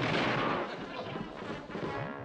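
Cartoon splash sound effect of bodies dropping into a pool: a loud rushing burst that dies away within about the first second, over background music.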